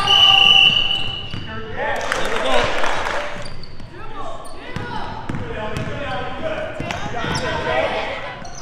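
Girls' basketball game in a school gym: sneakers squeaking on the hardwood floor and the ball bouncing, with shouting players and spectators echoing in the hall. A steady shrill whistle tone lasts about a second at the very start.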